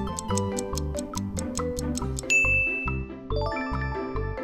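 Quiz countdown sound effects over upbeat background music: rapid even ticking of a timer, then a loud bell-like ding a little after two seconds in as time runs out. A brighter chime jingle follows about a second later.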